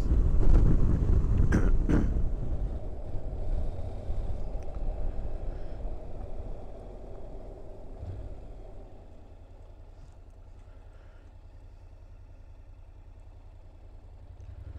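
Honda NC750X parallel-twin motorcycle on the move, with wind rushing over the microphone, fading steadily as the bike slows; from about nine seconds in, only the engine's low, even running at low speed remains.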